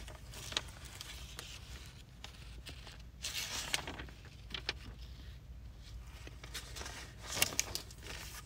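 A few short, soft paper rustles and handling noises, the loudest near the end, over a low steady hum: typical of Bible pages being turned.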